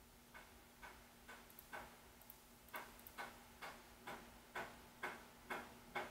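Steady ticking, about two sharp clicks a second, starting shortly after the start and growing louder, over a faint steady hum.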